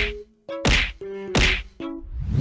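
Three sudden whack-like hit sound effects, about two-thirds of a second apart, with short music notes between them.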